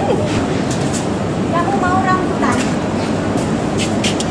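Steady, loud supermarket background noise with a low rumble, with faint voices about halfway through.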